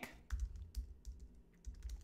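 Typing on a computer keyboard: irregular quick key clicks with soft thumps, easing off briefly a little past halfway and then picking up again.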